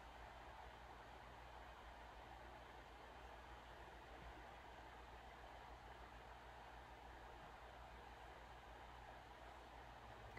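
Near silence: steady room tone with a faint low hum.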